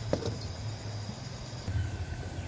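Gas stove burner running under an aluminium pot of milk that is coming to the boil, a low steady hum.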